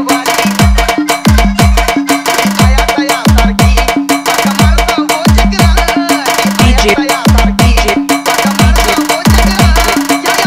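Marathi DJ dance remix in the 'active pad' sambal-mix style: electronic drum-pad and sambal-style percussion over deep bass kicks that fall in pitch, in a fast repeating pattern.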